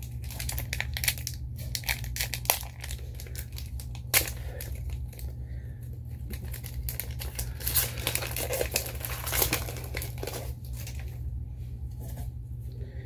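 A trading-card pack wrapper being crinkled and torn open by hand: a steady run of quick crackles with a few sharper snaps, over a steady low hum.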